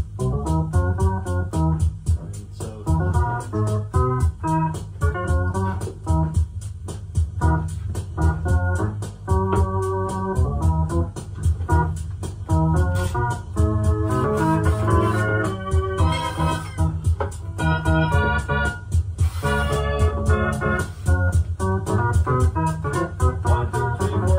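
Live improvised electronic music: keyboard chords over a pulsing bass line, with a fast, even ticking beat. The chords thicken and climb higher about two thirds of the way in.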